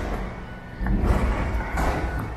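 City street ambience on a rain-wet road: a steady low traffic rumble, with tyre hiss swelling near the end as a vehicle passes.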